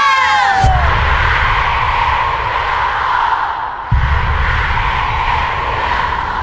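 A group of people cheering, with a shout trailing down in pitch at the start. Then comes a loud, rough roar of cheering mixed with heavy low rumble from a handheld camera's microphone being moved about. The rumble cuts out briefly just before four seconds in and comes back suddenly.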